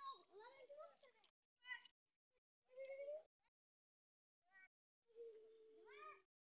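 A young child's high-pitched voice in short, separate utterances with silent gaps between, ending in one longer drawn-out sound near the end.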